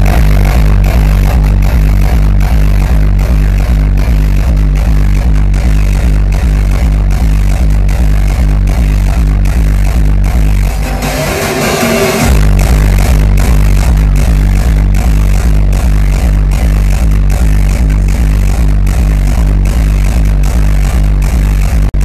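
Hardstyle dance music played very loud over an arena sound system and heard from the crowd, with a hard kick drum at about two and a half beats a second. A little past halfway the kick drops out for about a second and a half under a rising melody, then comes back.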